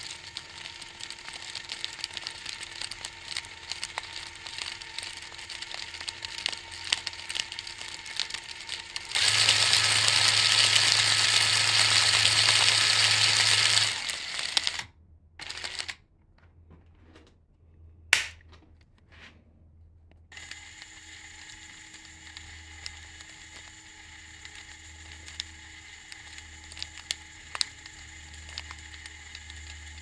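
3D-printed plastic 20:1 speed reducer running, its printed teeth and fingers clicking and rattling steadily over a level hum from whatever drives it. In the middle a louder, even rushing noise lasts about five seconds. It is followed by several seconds of near quiet with one sharp click.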